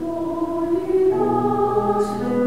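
Women's choir singing held chords that shift to a new chord about a second in.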